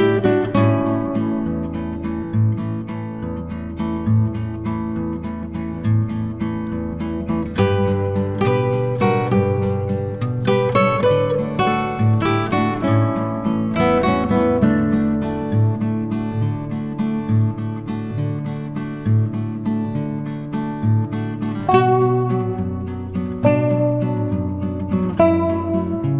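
Background music: acoustic guitar, plucked and strummed, at a steady level.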